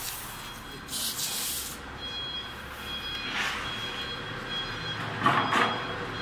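Factory machinery running with a steady thin high whine, and short bursts of hissing about a second in, about three and a half seconds in, and a louder one with clicking a little after five seconds.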